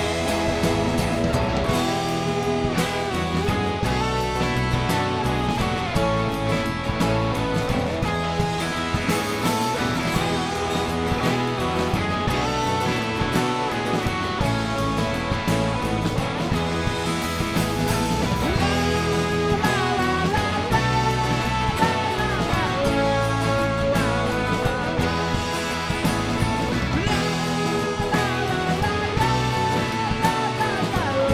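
Live rock band playing a song, with electric guitars and a drum kit.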